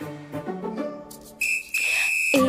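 Music with sustained notes fading out, then a high, steady whistle-like tone sounding twice from about one and a half seconds in, the second longer than the first.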